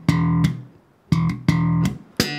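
Electric bass guitar (Enfield Lionheart) slapped with the thumb on the open E string: one note at the start, then a pair about a second in, each with a sharp attack and ringing about half a second.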